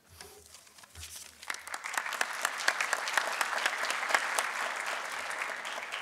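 Audience applauding, the clapping swelling about a second in, holding steady, then starting to thin out near the end.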